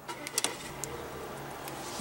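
A few clicks from the twisted start dial, then the 2016 Volvo XC90's 2.0-litre supercharged and turbocharged four-cylinder starts about half a second in and settles into a steady idle, heard from inside the cabin.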